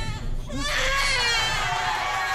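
Newborn baby crying: a short catch near the start, then one long cry from about half a second in.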